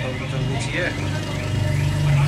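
Brief talking over a steady low hum that runs throughout.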